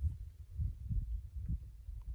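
Faint, irregular low thumps and rumble buffeting the microphone.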